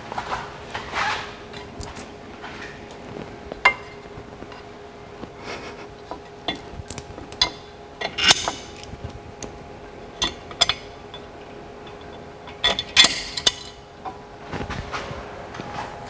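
Light clicks, taps and scraping of a brake cooling duct being handled and fitted up against the front lower control arm of a car on a lift, in scattered clusters. A faint steady hum runs underneath.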